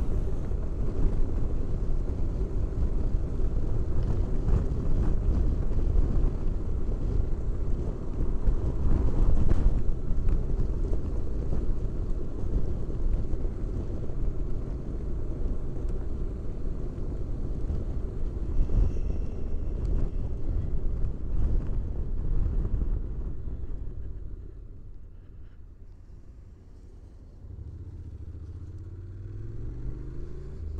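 Honda NC750X parallel-twin motorcycle on the move, heard under steady wind and road rush on the camera microphone. About four-fifths of the way through the noise drops as the bike slows. The engine note then rises as it pulls away again.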